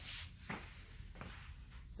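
Faint rustling and shuffling of a person rolling over on a foam floor mat, with a soft knock about half a second in.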